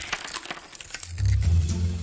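Crunching, crackly sound effect of a foot stepping down onto staples scattered in a carpet, with a low rumble coming in about halfway through.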